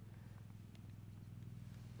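Near silence: only a faint, steady low hum in the background.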